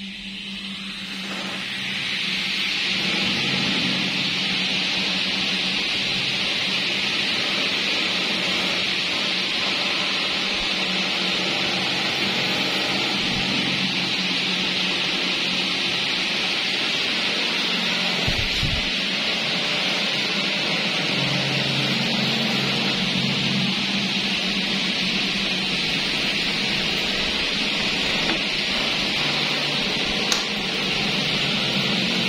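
Several electric pedestal fans with modified plastic blades spinning up after being switched on, rising over the first few seconds to a steady rush of air with a low motor hum.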